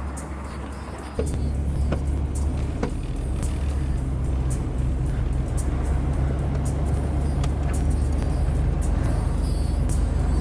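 The noise of a car that has just sped past fades away, then about a second in it switches suddenly to the steady low drone of a car driving, heard from inside the cabin, with music over it.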